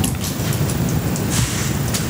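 Steady low rumble of background noise in a meeting room, with a few small clicks and a short rustle about a second and a half in.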